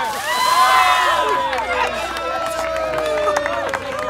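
Buckets of ice water dumped over several people at once: a rush of splashing water in the first second, then long shrieks and yells at the cold.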